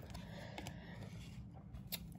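Quiet handling of glossy trading cards by hand, with a few faint soft clicks over low room tone.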